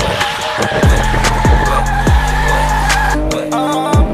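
Tyres squealing as a car does a smoky burnout, one long held squeal that stops about three seconds in, mixed with music that has a beat of deep bass drum hits dropping in pitch.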